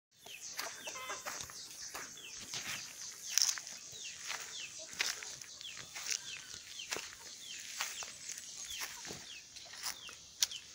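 Birds making repeated short, falling chirps, a few each second, over a steady high hiss, with scattered sharp clicks.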